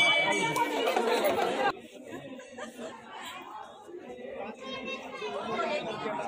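A woman laughs near the start over close voices. About two seconds in the sound drops suddenly to quieter crowd chatter, many overlapping voices.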